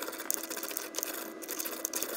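Pestle mashing shea butter and alpha lipoic acid powder in a marble mortar, making a fast, irregular run of small taps and scrapes.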